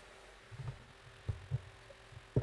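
Quiet room tone with a faint steady hum and a few soft, low thuds, about three, close together in the middle.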